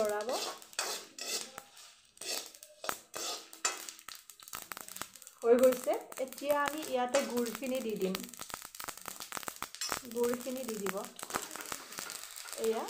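Metal ladle clinking and scraping against an aluminium kadai as dry red chillies and spice seeds are stirred, with quick clicks through most of the stretch. A pitched, voice-like sound comes in for a few seconds from about halfway through and briefly again near the end, louder than the stirring.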